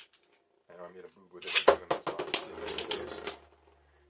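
Beyblade Burst top launched into a plastic stadium: a short whir from the launcher, a sharp clack as the top lands about one and a half seconds in, then rapid clicking as the spinning plastic tops strike each other and the stadium wall, over a low spinning hum.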